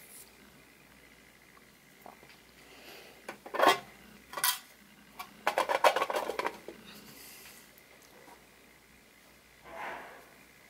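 A clear plastic box being handled: two sharp plastic knocks a little under a second apart, then about a second of quick rattling clatter, with a softer knock near the end.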